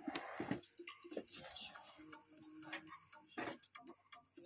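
Handling noise: scattered clicks and rustles as the phone is moved, with fleece fabric brushing close to the microphone near the end.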